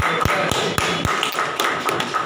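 Room noise in a hall: a steady hiss with a faint high tone running through it, broken by irregular light taps and soft thumps, several to the second in the first half.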